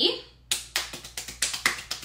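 Hands brushing and patting against each other to dust off cookie crumbs, a quick run of soft slaps starting about half a second in.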